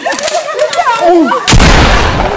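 A single loud gunshot about one and a half seconds in, cutting in suddenly and leaving a low rumbling tail that fades over about a second.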